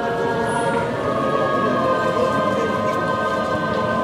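A choir singing slow, sustained chords of sacred music.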